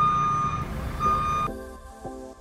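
JCB TM telehandler's reversing alarm beeping twice, half-second beeps about a second apart, over the machine's engine running; the machine is backing up. Both cut off suddenly after about a second and a half, and background music takes over.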